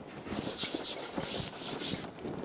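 Chalk scraping across a chalkboard as a line is drawn: a quick run of short, scratchy strokes.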